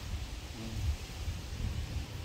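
Wind rumbling on the microphone, a low steady buffeting, with a faint short pitched sound about half a second in.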